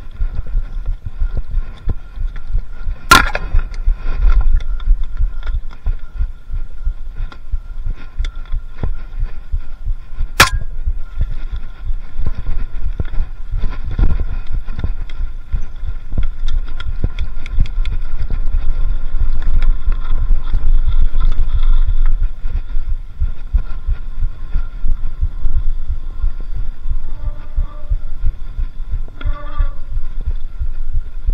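Mountain bike on a dirt forest trail, heard from a handlebar-mounted camera: a continuous low rumble and thumping of the frame and wheels over rough ground. It is first pushed uphill, then ridden, and grows louder past the middle. Two sharp clicks come about three and ten seconds in.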